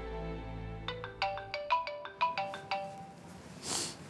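Mobile phone ringtone: a quick melody of short, bright plucked notes starts about a second in and plays for about two seconds, as background music fades out. A brief rustling swish comes near the end.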